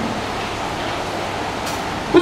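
A steady, even rushing noise with no voice or tone in it.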